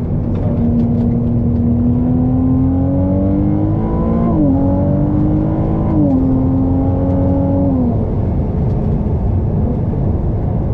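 Ferrari 296 GTB's twin-turbo V6 accelerating on track. The engine note climbs steadily and drops sharply twice, about four and six seconds in, at the upshifts, then falls away near the end as the driver lifts off, over a constant low road and wind rumble.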